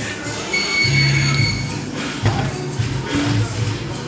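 Background music with a low bass line and a few held high notes.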